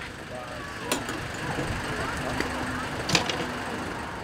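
Outdoor street ambience: a steady wash of road traffic with faint voices, and two brief clicks, one about a second in and one about three seconds in.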